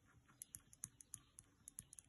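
Faint pen strokes on paper: an irregular run of short, soft scratches and ticks as letters are written.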